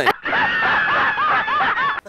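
A person snickering: a quick, continuous run of short 'heh' laughs lasting nearly two seconds, starting just after the first moment.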